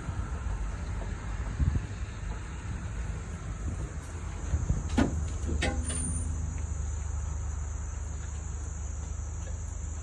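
A pickup truck drives slowly along a rough, overgrown dirt trail, with a steady low rumble from the engine and tyres. A couple of sharp knocks and a brief scrape come about five seconds in.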